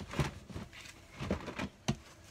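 Packing paper and a cardboard box rustling as hands dig through the box and lift out a plastic bar clamp, with irregular short knocks and one sharp click just before the end.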